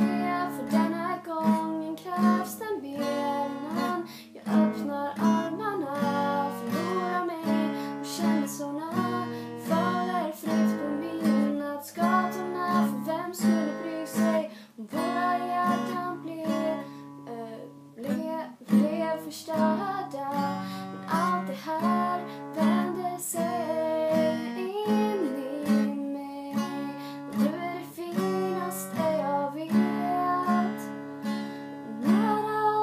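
A woman singing in Swedish while strumming an acoustic guitar in a steady rhythm.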